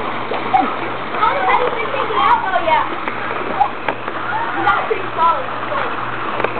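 Water splashing in a swimming pool as children swim and wade, with children's voices calling and chattering throughout.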